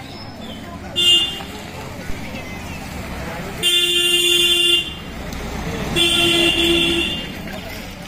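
A vehicle horn honking three times over street traffic: a short toot about a second in, then two longer honks of about a second each, the last with a brief break in it.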